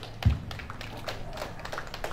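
A few people clapping lightly, the claps sparse and irregular, with one dull thump about a quarter second in.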